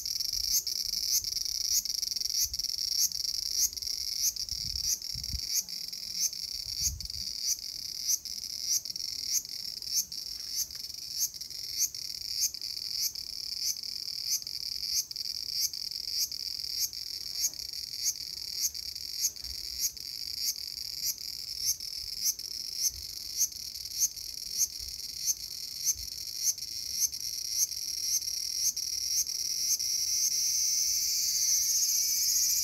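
A cicada calling: a continuous high, shrill buzz pulsing in even beats about one and a half times a second.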